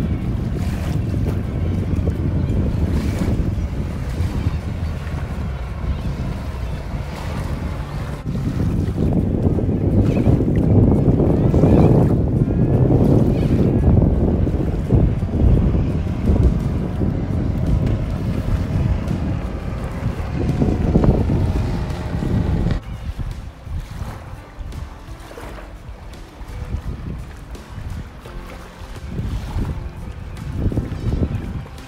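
Wind rumbling on the microphone over the distant engine of a jet ski speeding across the water. The rumble is loudest about halfway through and drops off sharply about two-thirds of the way in.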